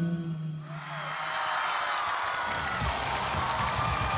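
The end of the dance music, a low held note fading out about a second in, giving way to a studio audience cheering and clapping, with high shrieks from the crowd.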